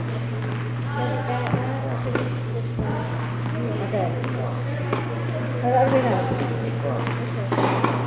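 Indistinct background voices over a steady low hum, with a few sharp knocks of tennis balls being hit or bouncing on the court.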